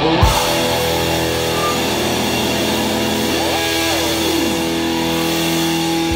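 Electric guitar through an amplifier ringing on held notes with no drumming. A little over three seconds in, the pitch glides up, holds briefly and slides back down.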